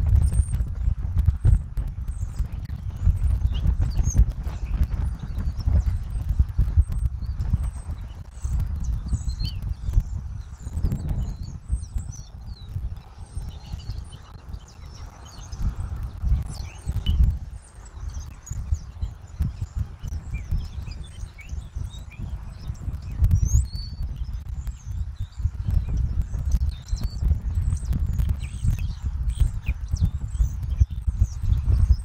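Wind buffeting an outdoor camera microphone in gusts, an uneven low rumble, with faint short chirps of birds in the background.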